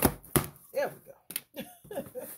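A pen jabbed through the packing tape along the seam of a cardboard box, tearing it open: a series of sharp knocks and pops against the cardboard, two in the first half second and two more just past the middle.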